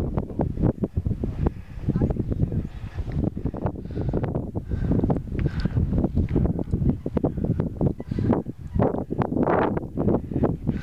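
Wind buffeting the camera microphone in uneven gusts, a rumbling noise that rises and falls throughout, with a stronger surge near the end.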